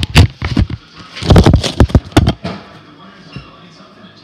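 Close handling noise at the microphone: a rapid run of sharp knocks and rubbing as a hand works the small magnet and magnetic slime against the recording device. It is loudest over the first half and dies down after about two and a half seconds.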